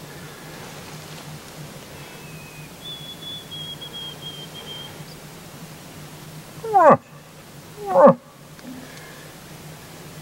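Two short, loud moose calls about a second apart, each sliding steeply down in pitch: a hunter's imitation moose calls, voiced close by to draw a bull in.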